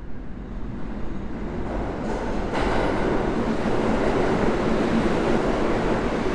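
A loud, steady rumbling rush of noise with no speech or music, growing louder about two and a half seconds in.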